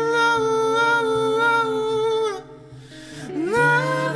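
Male and female voices singing a wordless, hummed harmony in held notes over a steady low instrument note. About halfway through the voices drop away briefly, then slide up together into the next held chord.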